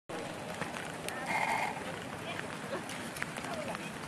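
Steady wind noise on the microphone, with a short steady-pitched call about a second and a half in and a few faint scattered knocks.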